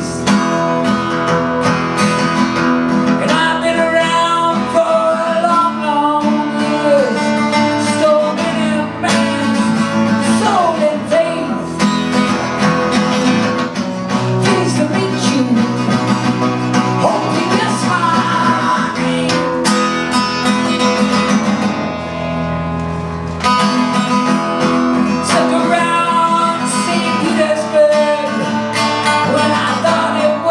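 A man singing a song live to his own strummed acoustic guitar.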